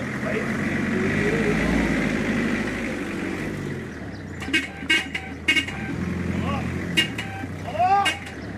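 A van's engine running loud as it drives up close and passes, followed by several short horn toots and a man's voice in the second half.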